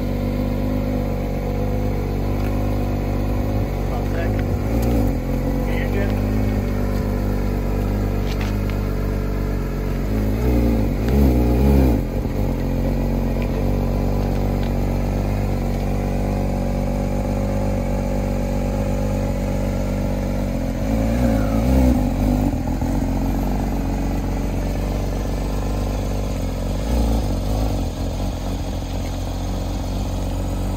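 Porsche 992 GT3's 4.0-litre flat-six idling steadily as the car creeps backwards down trailer loading ramps, with brief rises in revs around ten to twelve seconds in and again around twenty-one seconds.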